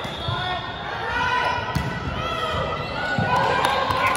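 Volleyball play on a hardwood gym floor: short sneaker squeaks and scattered thuds of feet and ball, mixed with indistinct shouts from players, in a large gym.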